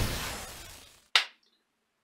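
Intro sound effect for an animated logo: a loud whooshing burst dying away over the first second, then a single sharp click a little after.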